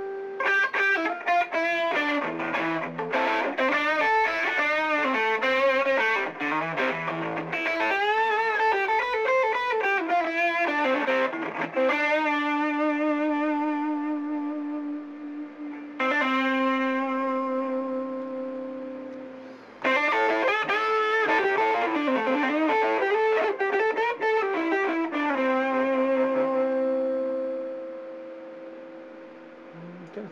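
Electric guitar played through a Skreddy fuzz pedal: distorted lead phrases with wide vibrato, broken by long sustained notes. A short gap comes just before the second phrase, and the last held note fades slowly near the end.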